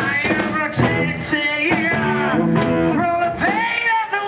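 A live hard blues-rock band playing: a male lead vocal sung by the bass player over electric bass, guitar and a drum kit with cymbals, with a long held, wavering note near the end.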